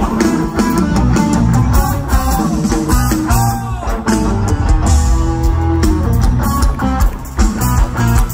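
Live rock band playing loudly through a festival PA, heard from within the crowd: electric guitars with bending notes over bass and drums.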